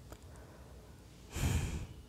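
A single short breath exhaled close to the microphone, about a second and a half in.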